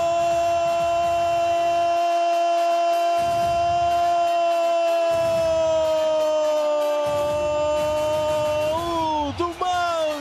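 A Portuguese-language football commentator's drawn-out "Goool!" goal call: one held shout for about nine seconds, sinking slowly in pitch, then breaking into shorter syllables near the end.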